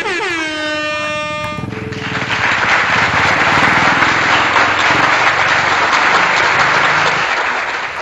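An added horn sound effect: a loud blast whose pitch drops and then holds for about two seconds. A loud, steady rushing noise follows and cuts off abruptly near the end.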